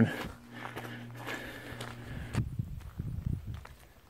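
Footsteps crunching along a dirt and gravel road while walking, under a faint steady low hum. About two and a half seconds in the sound changes abruptly to irregular low thumps.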